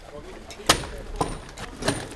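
Three short, sharp clicks, roughly half a second to three-quarters of a second apart, over a faint low background.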